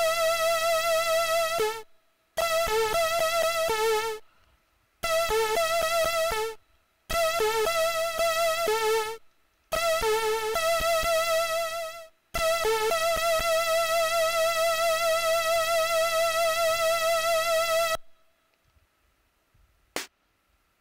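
Chiptune music played live on Teenage Engineering Pocket Operator synthesizers: a bright, buzzy lead with a fast vibrato over a beat, in short phrases broken by brief gaps. It cuts off abruptly near the end.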